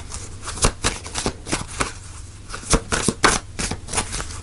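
A deck of oracle cards being shuffled by hand: an irregular run of soft card slaps and rustles, thinning out briefly around the middle.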